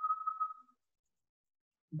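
A single steady high tone, pure and without overtones, fading out under a second in; silence follows.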